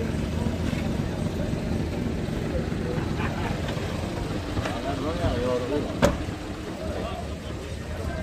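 Steady low rumble of vehicle engines with voices talking in the background, and one sharp click about six seconds in.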